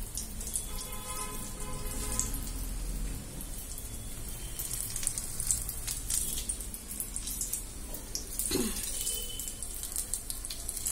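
Batter-coated green chillies (mirchi bajji) sizzling and crackling as they deep-fry in hot oil in a small pan; the crackle grows denser in the second half. A short falling squeak comes about eight and a half seconds in.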